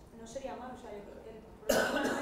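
A single loud cough near the end, over faint, quiet talk in the room.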